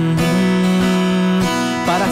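Acoustic guitar strummed in a slow country song, with a chord ringing out steadily through most of the gap between sung lines.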